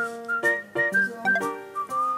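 Light background music: a whistled tune stepping down in pitch over a bouncy plucked accompaniment.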